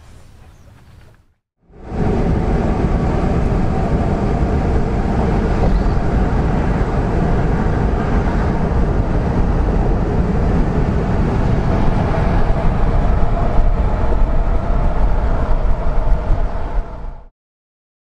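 Steady road and engine noise inside the cab of a Dodge Power Wagon pickup truck cruising at highway speed: a loud, low rumble that starts about two seconds in and cuts off suddenly near the end.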